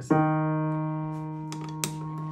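A single note on an upright piano, struck once and left ringing as it slowly fades, with two light clicks late on. It is plausibly the note whose damper was seen lifting early on the pedal, played to identify it.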